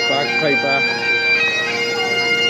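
Bagpipes playing a tune over their steady drone.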